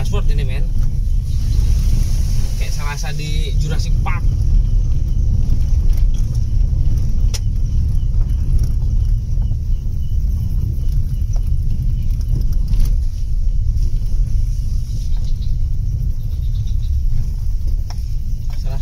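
Low, steady rumble of a car driving slowly over a rough, uneven dirt track, heard from inside the cabin, with a few sharp knocks as it jolts over bumps.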